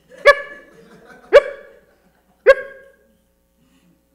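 A man imitating a dog barking into a microphone: three short, sharp barks about a second apart.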